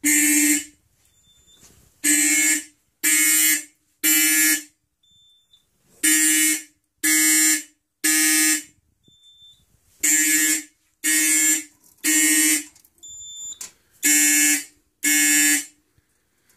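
Simplex 4051 fire alarm horns sounding the Code 3 temporal pattern: three buzzy blasts about a second apart, then a pause of about a second and a half, repeating.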